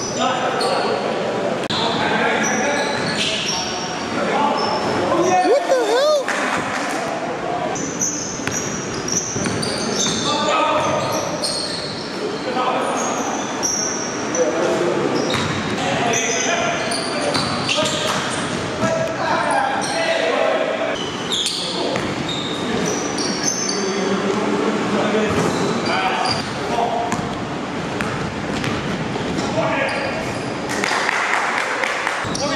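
Live game sound of an indoor basketball game: the ball bouncing on the hardwood floor, shoes squeaking on the court, and players' voices calling out, all echoing in the gym.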